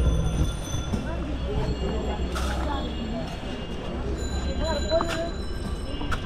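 Busy street-food-stall ambience: faint background chatter over a low steady rumble, with a brief rustle of dry puffed rice being scooped out of a plastic sack about two seconds in.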